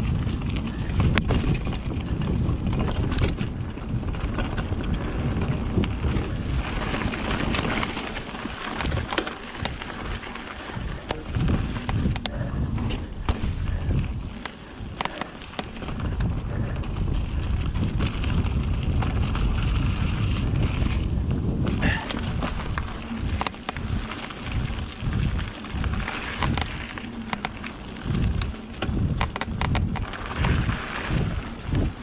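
Riding noise of a Commencal Meta mountain bike on a dirt forest trail: wind buffeting the microphone over tyres rolling on dirt and leaves, with the chain and frame clattering over roots and bumps. A quick run of low thumps comes in the last third.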